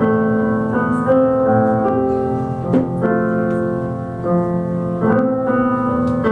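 Nord Electro 3 stage keyboard playing slow, held piano chords that change every second or so.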